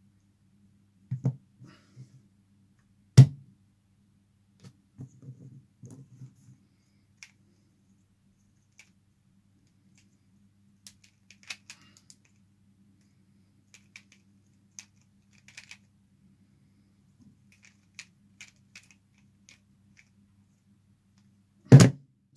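Pyraminx puzzle being turned fast by hand: scattered light plastic clicks of its pieces, with two sharp knocks about one and three seconds in. Near the end comes the loudest impact, a slap as the solved pyraminx is set down and the hands hit the speed timer to stop it. A faint steady low hum sits underneath.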